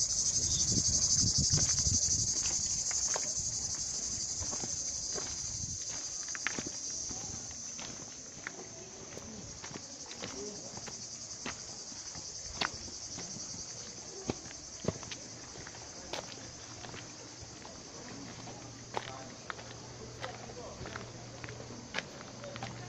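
Cicadas shrilling steadily in the trees, loud at first and fading over the first several seconds, with footsteps on a stony path as scattered sharp clicks throughout.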